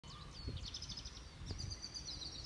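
Small birds chirping in quick runs of short high notes, over a faint low rumble with two soft thuds.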